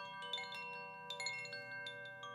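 Koshi chime swung gently by hand, its clapper striking the tuned rods in a run of bright ringing notes that overlap and sustain.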